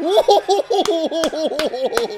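A man laughing hard in a quick, steady run of 'ha' pulses, about six or seven a second, with a few sharp claps mixed in.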